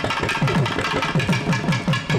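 Thavil, the South Indian barrel drum, played with thimble-capped fingers in a fast run of strokes. Each deep stroke rings with a low tone that drops in pitch.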